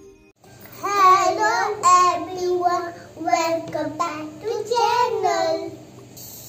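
A young girl's voice singing a short phrase, starting about half a second in, its notes gliding up and down.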